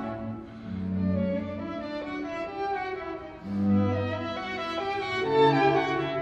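A string quintet of three violins, a viola and a cello playing live classical music. Held bowed notes overlap throughout, with the cello sounding low notes about a second in and again near four seconds under the higher violin lines.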